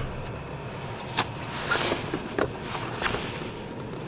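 A few sharp plastic clicks and knocks with a short rustle, from car interior fittings being handled, over a steady low rumble.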